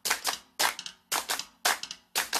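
Percussion intro of a song: dry, snappy drum hits in a steady rhythm, mostly in pairs, about two pairs a second.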